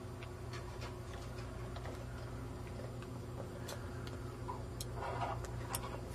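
Faint, irregular small ticks and clicks over a steady low hum, with a brief louder rustle about five seconds in.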